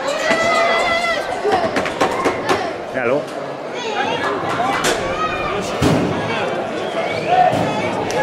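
Crowd of onlookers talking and calling out, many voices overlapping, with several sharp knocks and bangs scattered among them.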